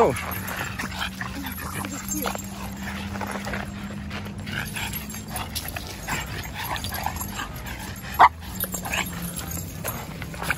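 Boston Terriers greeting and playing on leashes, making small excited vocal sounds, with one short, loud bark about eight seconds in.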